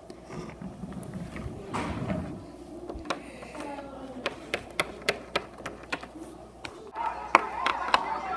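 Small plastic Littlest Pet Shop figurines tapped and set down on a wooden surface by hand: a scattered run of light clicks and knocks.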